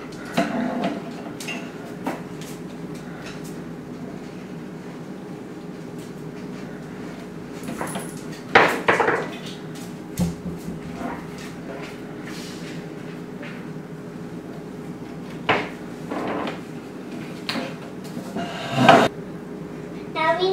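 Kitchen handling sounds: a cupboard door and ceramic bowls knocked and set down on a countertop, a handful of separate clatters spread through, the loudest near the end. A faint steady hum lies under them.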